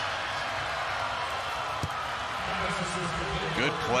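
Football stadium crowd cheering and clapping after a touchdown: a steady wash of crowd noise.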